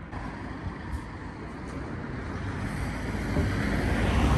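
Road traffic: a steady rumble of passing vehicles, growing louder through the second half as a vehicle approaches.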